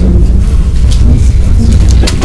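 A loud, steady low rumble, with faint snatches of voices and a few light clicks over it.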